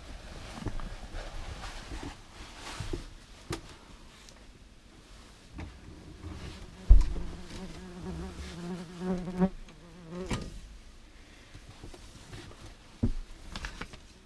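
German wasps (Vespula germanica) buzzing around a large nest, a faint, uneven buzz that grows steadier for a few seconds after a single sharp knock about seven seconds in; scattered light handling clicks.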